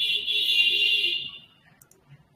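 A sudden shrill, high-pitched alarm- or buzzer-like tone that starts abruptly, holds for about a second and then fades away.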